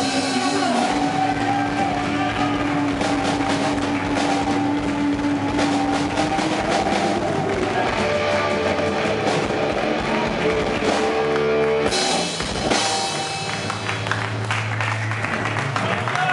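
Live rock band: distorted electric guitar holding long notes over drums and cymbals. About twelve seconds in the drumming drops away and a low guitar note rings on as the song winds down.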